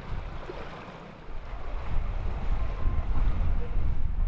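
Wind buffeting the microphone in gusts, stronger after about a second, over a steady wash of water noise from a flooded street.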